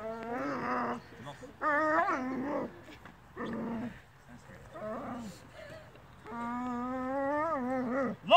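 A dog whining and growling in long, wavering moans while it grips a training bite sleeve: about five drawn-out calls, the longest near the end.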